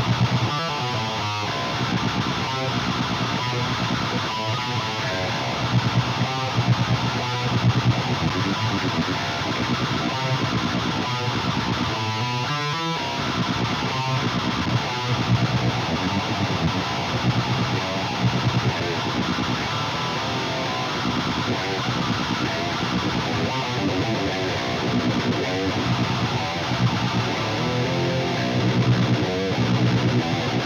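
Heavily distorted electric guitar riffing through an Airis Effects HM-2-style distortion pedal, the buzzing 'chainsaw' tone.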